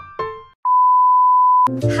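A few last keyboard notes of intro music, a brief gap, then a steady single-pitched electronic beep held for about a second, cut off as music with a beat comes in near the end.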